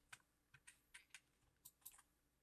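Faint, irregular clicking from computer controls, about seven short clicks over two seconds, as a map view is moved around on screen.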